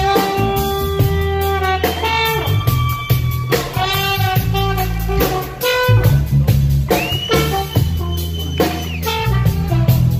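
Live rock band playing: drums, bass and electric guitar under a lead line of long held notes that slide up into pitch.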